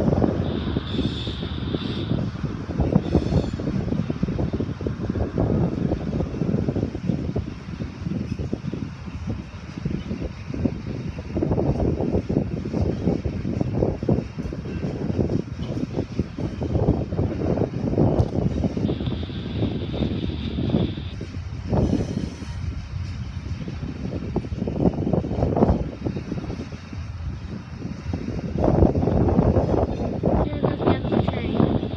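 Union Pacific mixed freight train rolling through a grade crossing: a continuous rumble and clatter of passing cars. Gusts of wind buffet the microphone in irregular surges.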